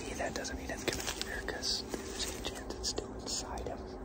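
A man whispering, too low for the words to come through, with a few short sharp clicks among it.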